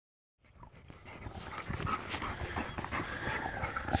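A dog sniffing and panting with its nose down a gopher hole: quick, irregular noisy breaths. It starts about half a second in and grows louder.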